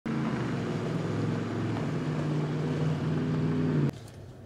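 A motor vehicle engine running steadily at a low pitch, cut off abruptly just before the end.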